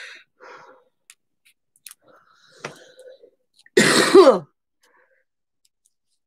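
A woman clearing her throat once, loudly, about four seconds in, the pitch dropping as it ends; a few faint small noises come before it.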